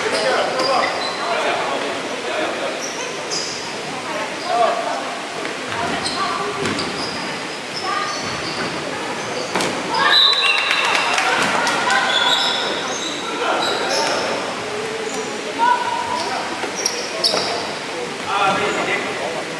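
Dodgeball play echoing in a large sports hall: rubber balls bouncing and smacking on the wooden floor, with players calling out. The busiest run of ball impacts comes about ten seconds in.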